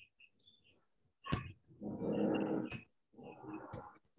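A dog growling in two bouts of about a second each, with a few sharp clicks, faint through a participant's video-call microphone.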